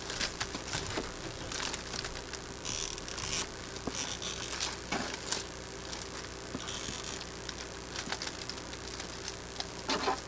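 Tailor's chalk scratching across cotton fabric in a few short strokes as a line is marked, with small handling clicks and a faint steady hum underneath.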